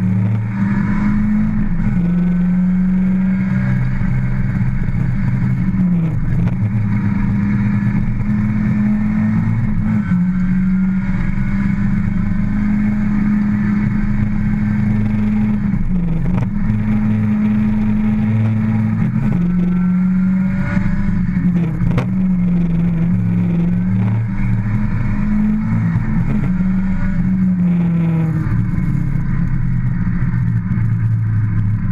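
Ford Escort RS2000's four-cylinder engine running hard under load, heard from inside the cabin. The revs dip and climb back every few seconds as the car works through the slalom course.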